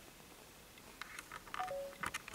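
A few short clicks, then a short electronic beep of two notes, the second lower than the first, near the end.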